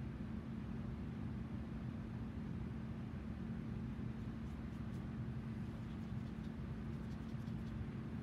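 Electric fan running: a steady whir with a strong, even low hum. A few faint light ticks come in the second half.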